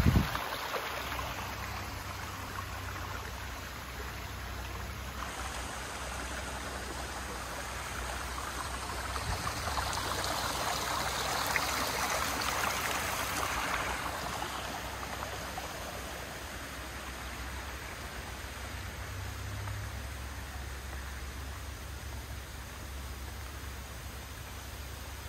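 Rushing water, a steady hiss with a low rumble underneath, swelling louder about ten seconds in and easing off again a few seconds later.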